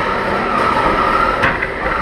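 Combat robots' electric drive motors whining steadily as the robots push against each other, with a sharp knock about one and a half seconds in.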